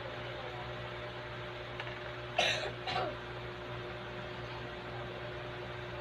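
A person gives two short throat-clearing coughs about half a second apart, over a steady low hum.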